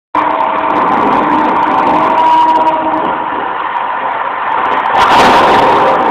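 Loud soundtrack of a night sound-and-light show played over loudspeakers: a dense, steady drone with held tones that come and go, and a hissing surge about five seconds in.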